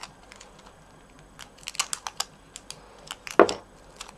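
Clear sticky tape crackling and clicking as it is peeled and handled between the fingers: scattered small sharp clicks, a quick run of them in the middle and a louder crackle near the end.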